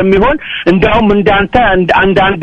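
Speech only: a person talking in conversation.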